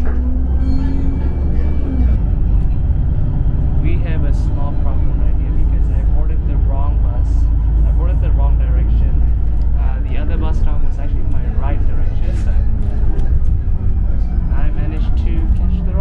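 Steady low rumble of a city bus heard from inside the cabin as it drives, engine and road noise together, with voices talking in the background now and then.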